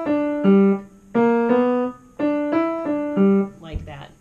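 Piano playing a short phrase of single notes at a slow, even pace, the phrase heard twice and stopping about three and a half seconds in.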